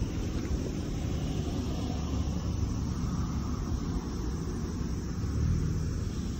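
Wind buffeting the microphone, a steady low rumble that flutters and swells slightly near the end.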